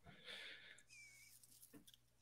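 Near silence: a pause in the talk with only faint room noise.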